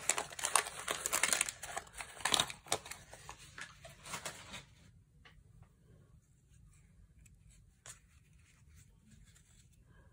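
Wax-paper wrapper of a 1987 Topps baseball card pack being torn open and crinkled: a dense run of crackles for about four and a half seconds, then almost nothing but one soft click near the end.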